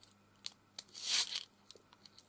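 Small craft embellishments and their packaging being handled: a few light clicks and a short crinkly rustle about a second in.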